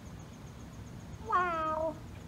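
A child's short drawn-out vocal sound, like a musing 'hmm', lasting about half a second near the end, over faint steady outdoor background.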